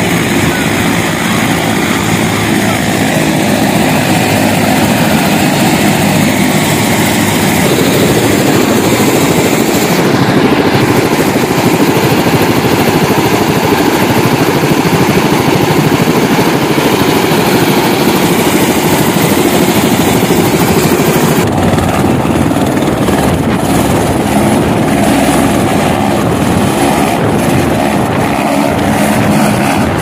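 Helicopter running at close range: a loud, steady rush of turbine engine and rotor noise. It changes character abruptly about ten seconds in and again about twenty-one seconds in.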